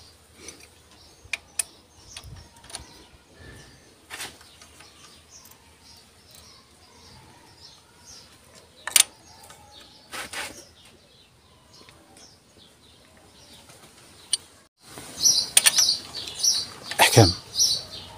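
A few sharp, scattered metallic clicks from a 10 mm wrench and hand tools working the valve-cover bolts, over a quiet background. In the last three seconds, birds chirp alongside a man's voice.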